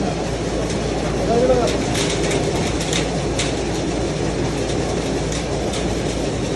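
Wheat cleaning and grading machine (fan and sieve type) running steadily: a constant mechanical hum and rattle from its shaking sieve deck, with wheat grains ticking as they slide down the chutes and spill into the basins.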